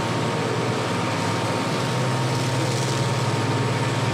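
Carrier aircraft engines running on the flight deck: a steady low drone with a thin, steady whine above it, the low part growing slightly stronger about two seconds in. It is played from a vinyl sound-effects record.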